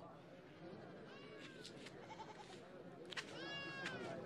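Faint bleating of livestock: a few short, wavering calls, with the longest and loudest in the last second.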